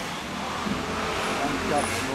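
Road traffic noise, a vehicle passing on the street as a steady rushing noise with a low rumble; a man's voice starts near the end.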